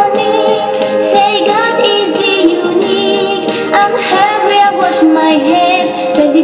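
A song playing: a high voice singing a wavering melody over held instrumental tones and a steady beat.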